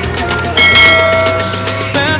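Background music with a bright bell chime, a subscribe-button notification sound effect, striking about half a second in and ringing for about a second before fading.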